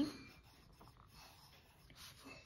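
Pen scratching faintly on notebook paper, drawing a line and a small circle.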